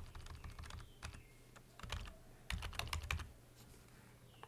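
Computer keyboard keys pressed in several quick runs of faint clicks, as text is deleted and retyped, with the last run ending a little after three seconds in.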